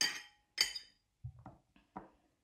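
A cookie cutter clinking against a plate of coffee: two sharp ringing clinks about half a second apart, followed by a few softer taps.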